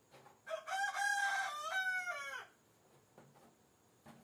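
A rooster crowing once, one call of about two seconds starting about half a second in and falling in pitch at the end.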